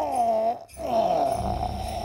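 A drawn-out wailing voice: one wail that rises and falls, a short break, then a second, steadier held wail.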